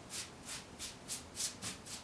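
A paintbrush swishing back and forth over a wooden Windsor chair, brushing on milk paint in a quick, even rhythm of about three or four strokes a second.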